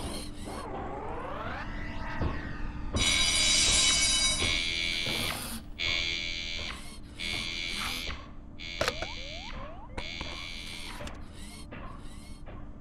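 Synthesized electronic sounds: a sweeping tone early on, then loud buzzing bursts a second or two long, and short pitch glides near the end, over a steady low hum.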